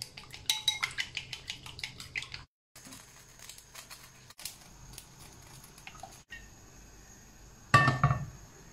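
Chopsticks beating raw eggs in a ceramic bowl, a rapid run of light clicks against the bowl's side for about two and a half seconds. A quiet stretch with a faint steady hiss follows, and a brief louder sound comes just before the end.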